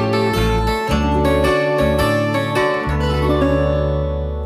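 Instrumental title jingle of fast plucked guitar notes over a bass line, settling into a held, ringing chord in the last second.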